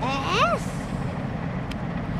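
Steady low rumble of the diesel engines of a pusher tug driving a barge convoy on the river. A short, high, rising 'Äh?' comes right at the start.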